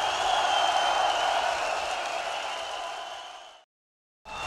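Live concert crowd cheering and applauding, fading out to silence about three and a half seconds in.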